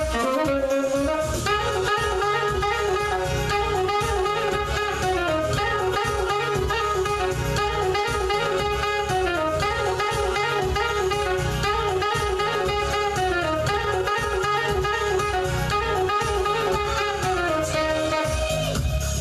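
Saxophone playing long held notes in phrases of about four seconds, each phrase ending with a step down in pitch. It plays over a backing track with guitar and a steady low beat.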